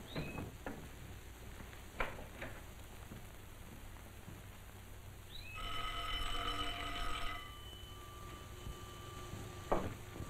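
Electric doorbell ringing once, a single ring of under two seconds about halfway through, with a few soft knocks before it.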